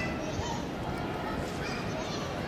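Short, high-pitched calls and shouts of children's voices, twice, over a steady low rumble of open-air background noise.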